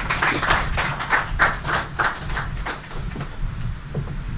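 A small audience clapping to welcome a speaker, with scattered hand claps that thin out and die away near the end.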